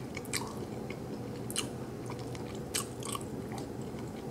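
Close-miked, closed-mouth chewing of a chicken wrap (soft tortilla around chicken, slaw and peppers), with a scattering of short, sharp wet mouth clicks.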